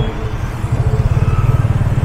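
Yamaha FZ25's single-cylinder engine running as the motorcycle rides through traffic: a low, rapid pulsing that grows louder after the first half-second.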